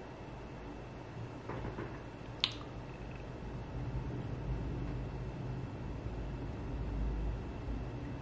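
Quiet room tone with a low rumble, a faint rustle, and a single sharp click about two and a half seconds in.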